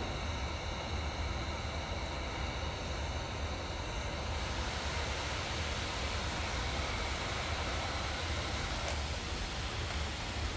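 Handheld electric heat gun running steadily, its fan blowing hot air onto a freshly slip-attached clay cup handle to stiffen it. A faint whistle in its note drops away about four seconds in, leaving an even rushing hum.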